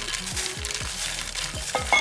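Popcorn rustling and tumbling from a glass bowl into soft cookie dough, a light crackly rustle, over background music with a steady beat.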